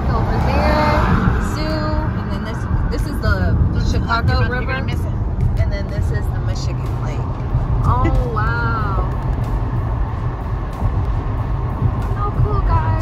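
Steady low road and engine rumble inside a moving car's cabin, with a song with singing playing over it in a few stretches.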